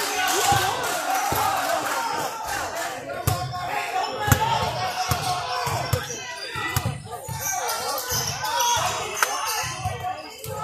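Basketballs bouncing irregularly on the hardwood floor of a large gym during a game, with voices of players and spectators talking over them.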